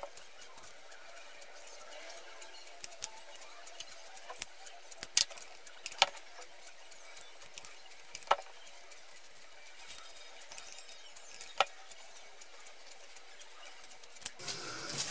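Quiet handling of a satin ribbon bow and a hot glue gun: a faint steady hiss with a handful of short, light clicks and taps scattered through it.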